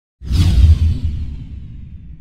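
Logo-reveal whoosh sound effect: a sudden rushing sweep over a deep rumble that starts about a quarter of a second in and fades steadily.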